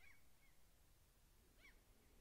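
Near silence, with a few faint, short bird calls; the clearest comes near the end.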